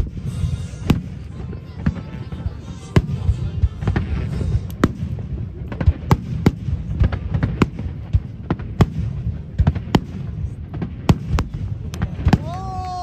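Aerial fireworks shells bursting overhead: a rapid, irregular series of sharp bangs, about two a second, over a continuous low rumble.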